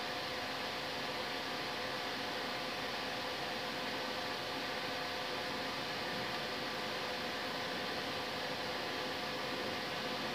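Steady background hiss with a few faint, even hum tones: constant room noise with no distinct events.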